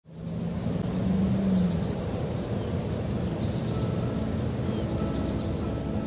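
Outdoor ambience: a steady low rumble with a few faint, short high chirps.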